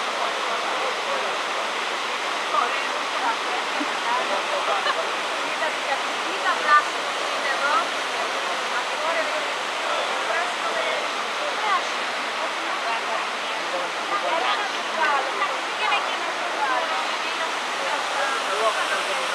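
Steady rush of a small waterfall and the stream pool below it, with small irregular splashes over the constant noise.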